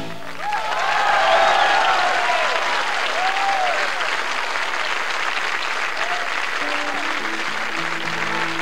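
Concert audience applauding, with several whistles gliding up and down in pitch in the first few seconds. Near the end, a few sustained instrument notes come in over the clapping.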